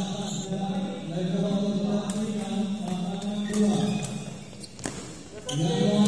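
Voices chanting in a sustained, sing-song way in a large hall, with one sharp crack about five seconds in.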